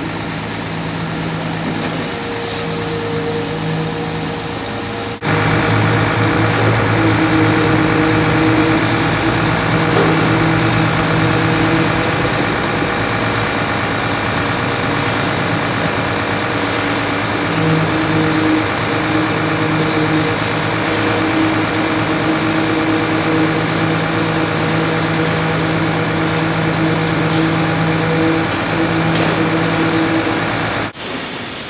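Heavy construction machinery engines running steadily, with a steady mechanical drone and noise. The sound jumps louder about five seconds in and stays at that level.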